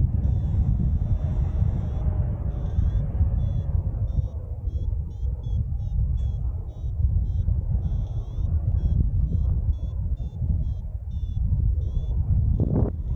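Airflow buffeting the microphone in flight, a steady low rumble, under a paragliding variometer's short high beeps repeating about twice a second. The beeps are held as a longer tone near the start and again around eight seconds in; this beeping is the vario's signal of rising air.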